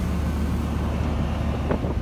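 Heavy wrecker tow truck's engine running steadily, a low even drone.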